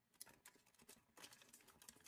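Faint crinkling and light ticks of origami paper being pressed and creased under fingertips as a square flap is folded into a diamond.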